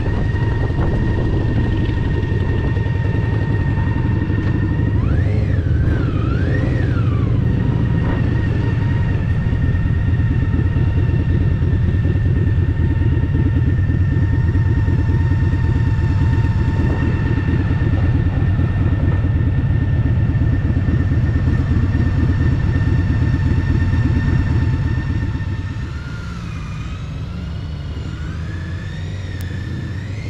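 Touring motorcycle engine running at low speed with a steady rumble and a faint high whine over it, as the bike rolls slowly and stands. Near the end it drops noticeably quieter.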